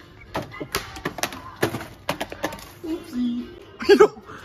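Several sharp clicks and rustles of a packaged bath sponge being handled and pulled off a metal peg hook, with a short voice sound near the end.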